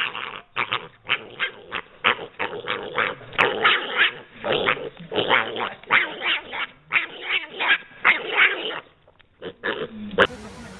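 A dog barking over and over in a rapid series, about two to three barks a second, with a brief pause near the end.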